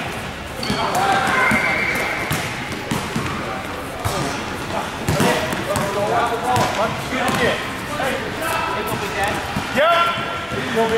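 A basketball bouncing on a gym floor as it is dribbled, with players' voices and shouts over the play.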